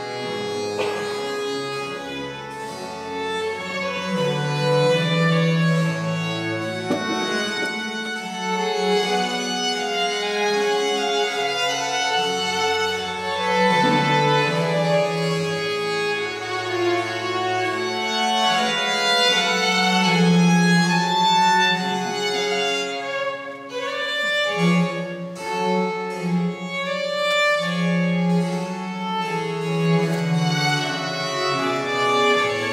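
Baroque chamber music played on period instruments: two baroque violins and a baroque cello with harpsichord, playing continuously with a brief break in the phrase about three-quarters of the way through.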